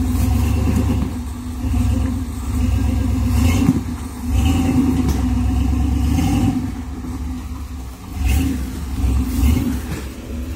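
Engine of a lifted Chevy S10 rock crawler running under load and revving in repeated bursts as it crawls over rocks, the level swelling and falling every second or two.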